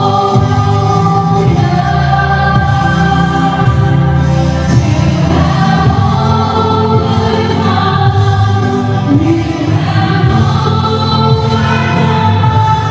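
Live Christian worship music through a PA: singing over electric guitar and band, with strong sustained low notes.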